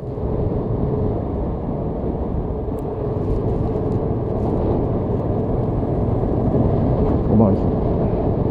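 Yamaha XSR700's parallel-twin engine running steadily as the motorcycle rides along, mixed with wind and road noise.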